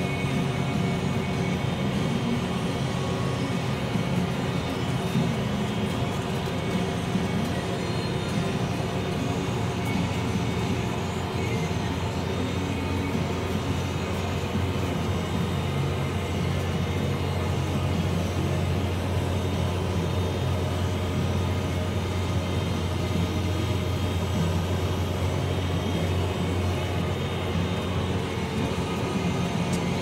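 Case IH Magnum 315 tractor's diesel engine running steadily under load while pulling a planter, heard from inside the closed cab: a constant low drone with steady whine tones over it, the low hum growing stronger about a third of the way in.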